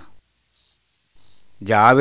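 Cricket chirping, short high chirps repeating about three times a second. A man's voice starts speaking about one and a half seconds in.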